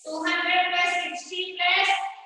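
A high voice singing in phrases of held notes, with a short break about a second in.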